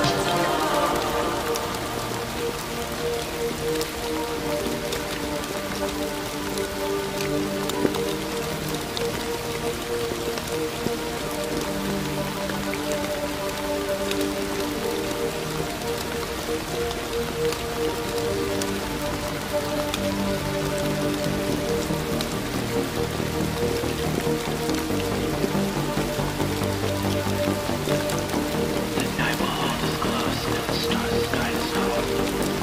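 Steady rain falling on a surface, a continuous hiss and patter, mixed with soft music of long held notes.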